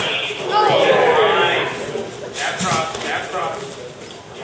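Coaches and spectators shouting in a large hall during a kickboxing sparring round, loudest about a second in. Midway come a couple of sharp smacks, typical of gloves or kicks landing.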